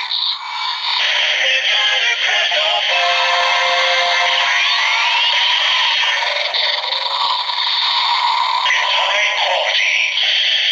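Kamen Rider Zero-One DX Forceriser belt toy with the Metal Cluster Hopper Progrise Key playing its transformation sound: electronic henshin music with a processed voice calling the transformation. It plays through the toy's small speaker, thin with no bass, and has a rising electronic sweep in the middle.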